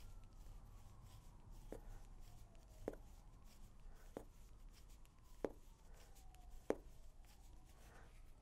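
Bamboo knitting needles clicking lightly as stitches are purled in bulky wool yarn: five soft taps about a second apart, over faint room tone.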